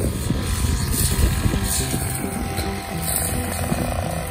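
Backpack brush cutter's small engine running steadily at working speed, with background music.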